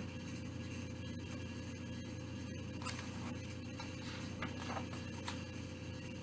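Quiet room tone with a steady low hum and a few faint rustles of a picture book's paper pages being handled and turned.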